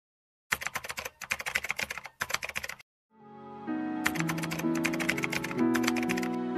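Rapid keyboard-typing clicks in two runs, the first starting half a second in and stopping just before three seconds, the second near the end. Soft, slow music with held notes fades in under them about three seconds in.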